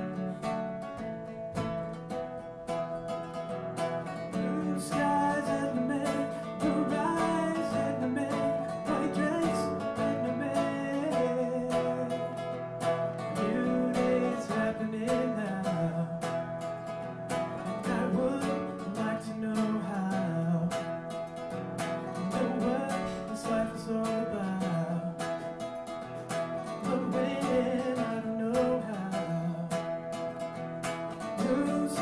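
A man singing to his own strummed acoustic guitar.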